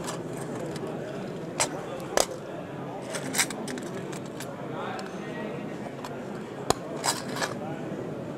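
Small tools and a round metal tin being picked up and put down on a bench cutting mat: a scattering of sharp clicks and knocks over a steady room background.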